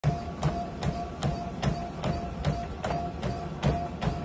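Elliptical cross-trainer in use, clicking in a steady rhythm of about two and a half clicks a second with a low thud on each stroke and a steady hum between.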